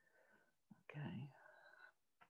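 Faint, muffled voices coming over a video-call link, in two short stretches, the second a little louder.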